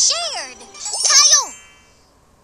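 Short children's-cartoon title-card sting: two quick swooping, voice-like sweeps with a bright high shimmer, the second dying away about a second and a half in.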